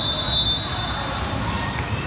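Referee's whistle in a gym: one steady high-pitched blast that stops about a second in, over the hall's background crowd noise.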